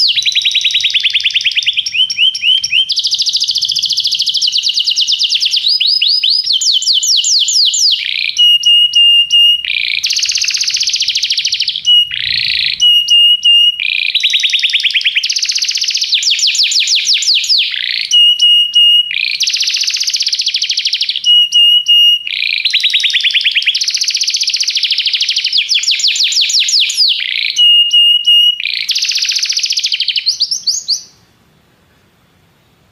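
Domestic canary singing a long unbroken song of fast trills and rolls, broken every few seconds by short runs of a steady, rapidly repeated whistle note.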